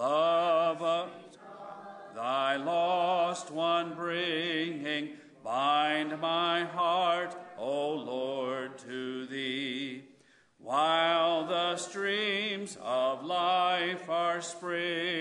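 A man singing a hymn solo and unaccompanied, in slow phrases of held notes with vibrato and short pauses for breath between them.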